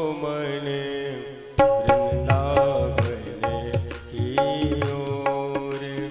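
Hindu devotional bhajan played live: an electronic keyboard holds a sustained melody under a man's singing, with tabla drumming. The drumming and bass drop away briefly about a second and a half in, then the tabla strokes come back in.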